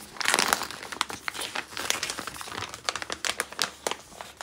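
Glossy wrapping paper being crumpled and lifted out by hand, a dense run of irregular crinkles, loudest in the first half second.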